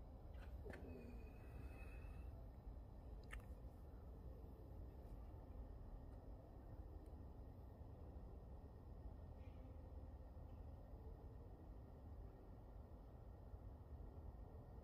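Near silence: low room hum, with a few faint clicks in the first few seconds.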